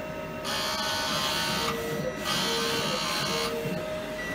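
Eco-solvent wide-format printer (PL-ES-1.8) printing a vertical alignment test pattern. The print-head carriage runs across the media, starting about half a second in, in two long passes with a short break between them.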